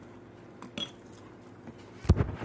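A metal spoon clinks against a ceramic cereal bowl once, with a short high ring, followed by a fainter tick.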